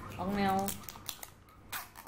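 A short spoken utterance, then a few brief clicks and rustles of small objects being handled.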